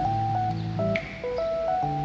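Background music: a melody of held notes stepping up and down over a steady low bass note.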